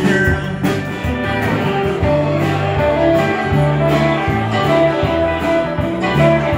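Live band playing, with electric guitar to the fore over drums keeping a steady beat of about two hits a second, and keyboard.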